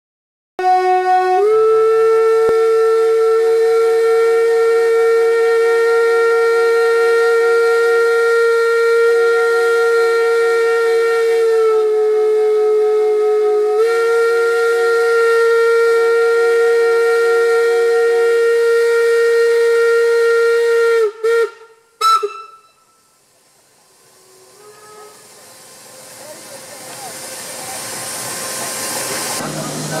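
Steam locomotive whistle blowing one long, steady blast of about twenty seconds, dipping slightly in pitch for a couple of seconds midway, then two short toots. Afterwards a hiss swells up over the last several seconds.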